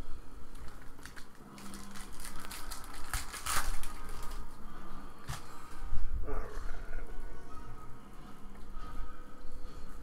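Foil wrapper of a trading-card pack crinkling as it is torn open, with a cluster of crackles a few seconds in. Then a couple of sharp clicks as the cards are handled.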